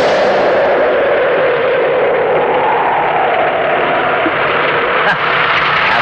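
Steady noise of vehicles driving fast on a road, swelling and easing off over a few seconds, with a short click about five seconds in.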